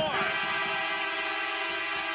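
Ice hockey arena goal horn sounding one long, steady, chord-like blast to signal a goal.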